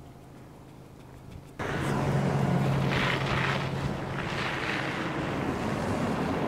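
A motor vehicle running at low speed, a steady low engine drone under wind and road noise. A faint hum gives way abruptly to the much louder vehicle sound about a second and a half in.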